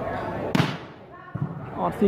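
A volleyball struck hard by hand: one sharp smack about half a second in, ringing briefly under the metal roof, followed by spectators' voices.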